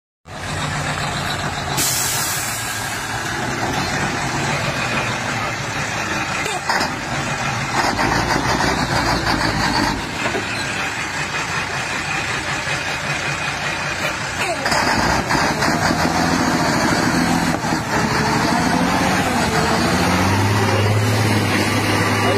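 Heavy truck engine labouring as the truck crawls through deep mud, with a short hiss about two seconds in.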